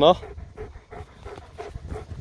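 German shepherd panting rapidly while it lies waiting on a stay command.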